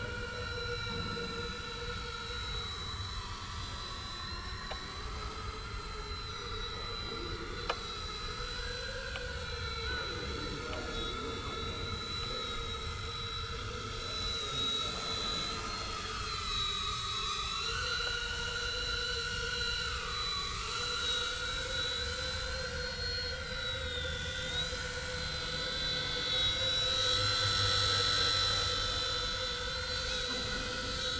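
Eachine E129 micro RC helicopter flying: a steady high motor-and-rotor whine that dips and rises in pitch as the throttle changes, getting louder near the end as the helicopter comes closer.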